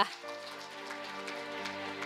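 Audience applause, a dense patter of many hands clapping, over background music holding steady chords.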